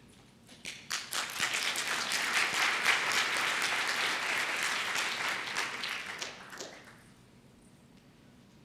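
Audience applauding: a crowd of hand claps that builds within the first second, holds steady, and dies away about seven seconds in.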